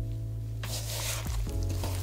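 Background music with a steady low bass. From about half a second in, a soft rustling as gloved hands toss flour-coated chicken wings in a wooden bowl.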